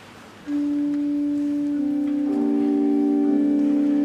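Organ music starts suddenly about half a second in with one long held note. More held notes join from about two seconds in and build a chord, as a hymn introduction begins.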